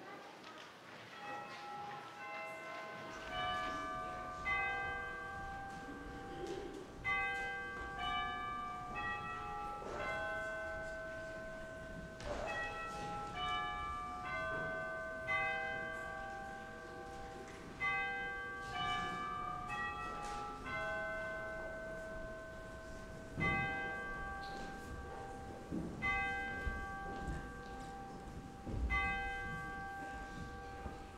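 Bells ringing a slow, sparse melody, single notes and small clusters struck about once a second and left to ring on.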